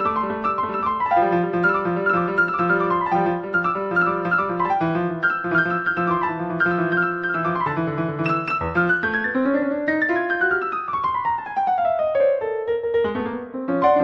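Solo piano music in a classical sonata style: fast running notes over a steady lower line. About nine seconds in, a long scale run sweeps downward while the bass line climbs.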